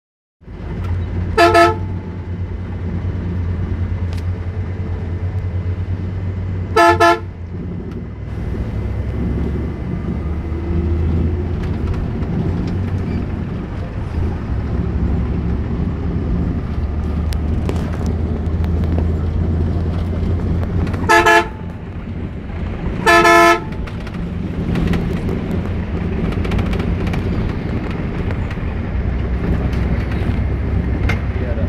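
Bus engine and road noise rumbling steadily inside the cabin, with four short loud blasts of the bus horn: one about a second and a half in, one about seven seconds in, and two close together past the middle, about two seconds apart.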